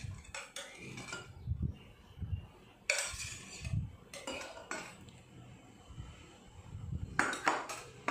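A steel spoon clinking and scraping against a stainless steel bowl while scooping chopped coriander leaves, in irregular knocks with a quick run of clinks near the end.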